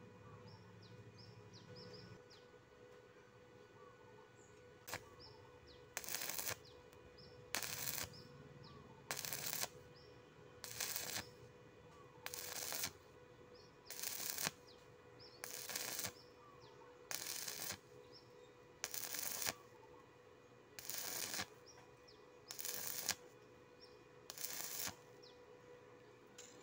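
Stick-welding arc on thin angle iron, struck and broken again and again: about a dozen short bursts of arc crackle, each under a second and roughly one every second and a half, after a brief first strike about five seconds in. This on-off stitch rhythm keeps the thin metal from burning through.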